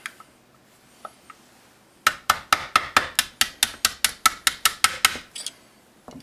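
Small hammer tapping a pin punch in a quick run of about twenty sharp taps, about six or seven a second, starting about two seconds in. It is driving a pin out of an airsoft pistol's frame.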